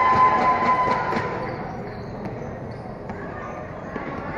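A few basketball bounces and thuds on a concrete court, under crowd voices that die down over the first two seconds. A steady tone stops about a second in.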